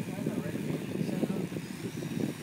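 Wind buffeting a handheld camera microphone and road rumble while riding a bicycle, an irregular low rumble with no steady tone.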